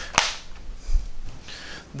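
A single sharp click with a short ringing tail, followed by faint low bumps of handling noise as the page on the projector is changed.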